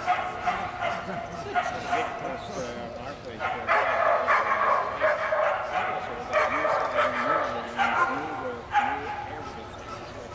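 A dog barking and yipping repeatedly in short, excited bursts, most densely from about four seconds in, with a person's voice also heard.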